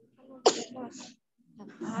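A single short, sharp burst from a person's voice about half a second in, followed by a faint brief mumble, with speech starting again near the end.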